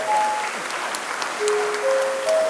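Audience applause with scattered claps, over a rising four-note chime of steady tones that finishes about half a second in and sounds again about a second later.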